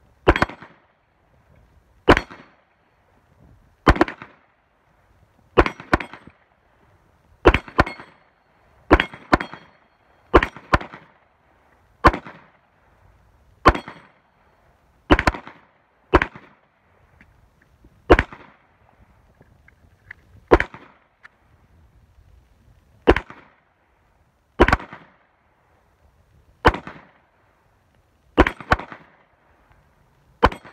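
Two handguns firing, separate shots every one to two and a half seconds, sometimes two in quick succession, each crack followed by a short echo.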